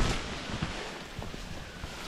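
Wind noise on the microphone mixed with leaves and stems rustling as the camera moves along a narrow overgrown path.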